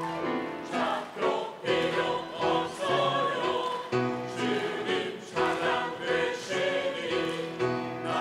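Mixed choir of men and women singing a Korean gospel song in short phrases.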